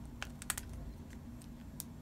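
Apple iPhone 4 bumper case being pressed onto an iPhone 4S: a handful of faint, irregular clicks and taps as the frame is worked over the phone's edges.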